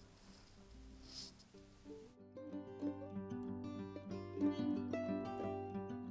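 Light plucked-string background music starting about two seconds in. Before it, quiet room sound with one brief soft rub about a second in.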